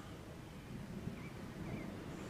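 Faint outdoor background with a small bird chirping quietly twice over a low steady rumble.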